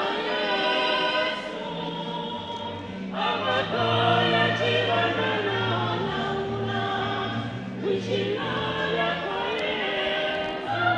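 Choir singing, many voices holding notes together in harmony, with low bass notes joining about two and a half seconds in.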